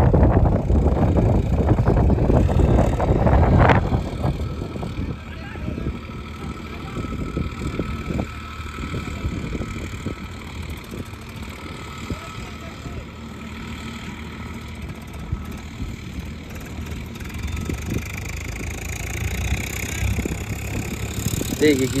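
Farmtrac 60 tractor's diesel engine working steadily under load as it pulls a harrow, heard from a distance as a steady drone. Wind buffets the microphone for the first few seconds, and the engine grows slightly louder near the end.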